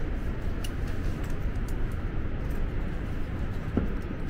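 Steady low rumbling noise with a few faint, light clicks scattered through it.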